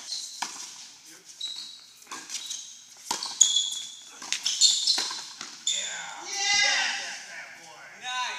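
Doubles tennis rally on an indoor hard court: sharp racket-on-ball hits and sneakers squeaking on the court surface, then a player's drawn-out shout about six seconds in.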